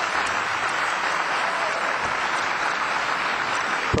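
Audience applauding steadily in a large hall, stopping abruptly at the very end.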